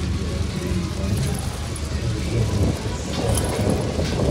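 A low, uneven rumble with faint voices under it.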